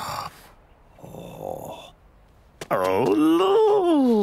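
A cartoon character's wordless vocal groan, rising and then falling in pitch, about three seconds in, after a quieter stretch.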